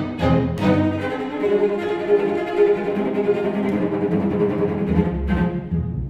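Two solo cellos with a string chamber orchestra playing: short accented strokes in the first second, then long held notes, with a low bass note coming in about five seconds in.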